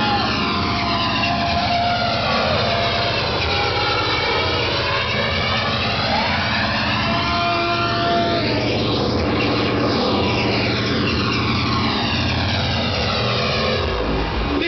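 Hardcore techno played loud over a club sound system, with a whooshing flanger-style sweep that slowly rises and falls every few seconds over a steady low-end pulse.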